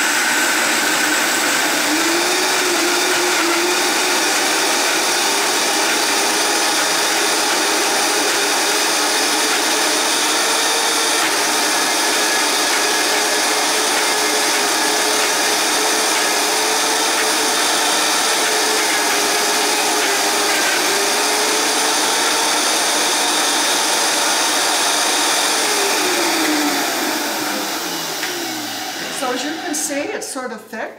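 Vitamix blender running at high speed on a thick mix of soaked cashews, dates and coconut milk, with no tamper in. It is switched off near the end, and the motor winds down in a falling whine.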